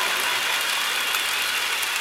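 Arena audience applauding, a steady wash of clapping.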